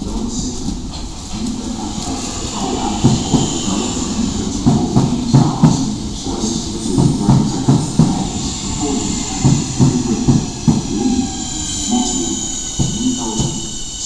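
Networker electric multiple-unit train running close past a platform, its wheels clattering in irregular knocks over the rail joints, with a high whine above them.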